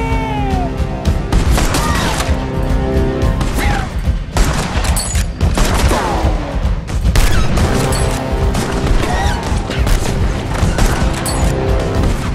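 Rapid, repeated gunfire from revolvers and rifles, shot after shot throughout, over a musical score with sustained tones, with a few falling whines among the shots. A man's shout trails off in the first moment.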